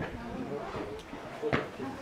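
People talking nearby, with a couple of short sharp clicks about a second in and shortly after.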